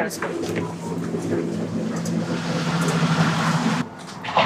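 A steady engine hum, with a rising rush of noise over the last two seconds, cut off suddenly just before the end.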